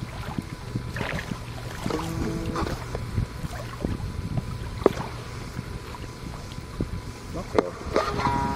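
Wind buffeting the microphone in open air, a steady low rumble, with a few sharp knocks as a person sits down on a chair in shallow water holding a guitar. A few short pitched notes sound about two seconds in, and a single spoken word comes near the end.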